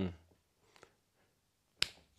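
A man's voice trails off, then near silence, broken by a faint tick a little under a second in and one sharp click near the end.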